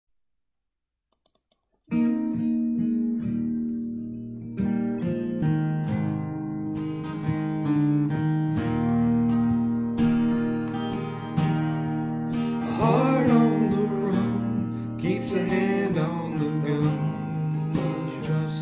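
Acoustic guitar chords played in a slow, steady progression, starting about two seconds in after a few faint clicks. A wordless, wavering vocal line joins over the guitar a little past the middle.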